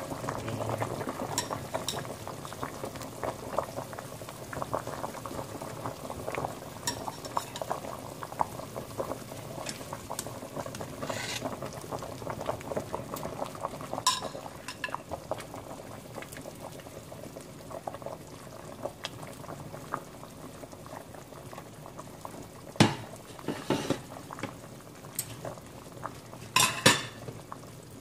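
Fish and vegetable soup boiling in a stainless steel pot, a steady bubbling. Metal tongs clink sharply against the pot a few times near the end.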